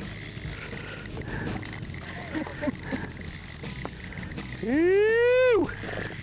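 A Johnny Morris Signature Series spinning reel works under the load of a hooked lake trout, giving a steady mechanical whir with ratchet-like clicking. About five seconds in, a person lets out a loud, drawn-out vocal call that rises and then falls in pitch over about a second.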